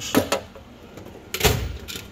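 A few light clicks, then a steel tool-cart drawer sliding shut with a single solid thud about one and a half seconds in.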